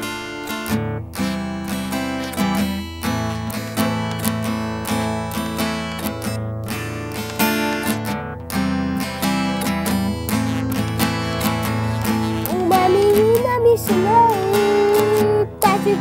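Acoustic guitar strummed in a steady rhythm by a child, the introduction to a song.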